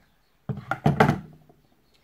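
A quick cluster of sharp knocks and clatters as makeup things, a palette and brushes, are handled and set down on a table. It is loudest about a second in.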